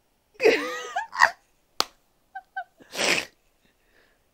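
A person laughing hard in a few bursts: a high, squealing laugh with its pitch sliding up and down, a second burst, a sharp click, then a breathy wheezing gasp about three seconds in.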